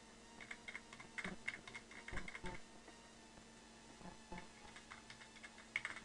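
Typing on a computer keyboard: a run of quick keystrokes for about two seconds, a pause, then a second run near the end.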